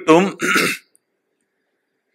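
A man's voice ends a phrase less than a second in, finishing with a short breathy, hissing sound, and then stops. Silence follows.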